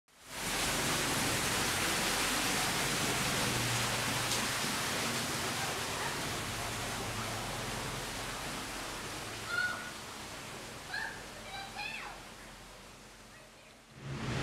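Steady rushing of an artificial waterfall, fading gradually over the last half as it is left behind. A few brief faint high calls or voices sound near the end.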